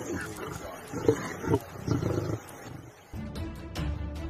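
Onlookers exclaiming "wow" and laughing. About three seconds in, this cuts to background music with a steady beat.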